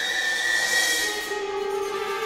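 Chamber orchestra playing sustained, slow-moving music. A held high note and a high shimmering wash fade out a little over a second in, as a lower held note comes in.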